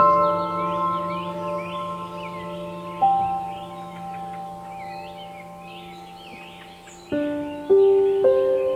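Soft piano playing slow chords that ring out and fade, with a new note about three seconds in and fresh chords struck near the end. Small birds chirp steadily in the background.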